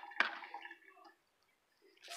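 A stainless-steel bowl holding a raw marinated whole chicken is set down on a countertop with a single sharp knock just after the start, followed by faint wet squishing of the chicken shifting in the bowl.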